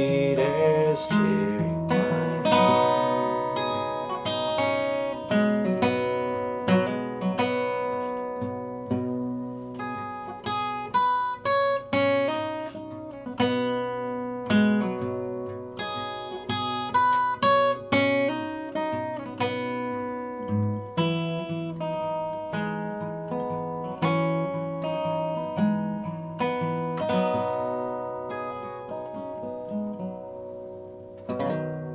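Yamaha acoustic guitar, capoed, fingerpicked in an unbroken run of quick plucked notes that ring over sustained bass notes.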